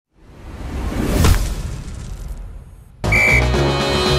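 A swelling whoosh sound effect that builds to a peak just over a second in and fades away, then a theme tune with a beat cuts in suddenly about three seconds in.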